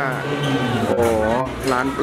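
A man speaking Thai, drawing out a long wavering 'oh' about a second in, over a steady low background hum.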